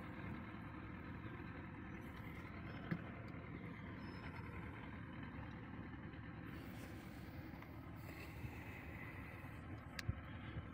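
Faint, steady low rumble of outdoor background noise, with a single light tick about three seconds in.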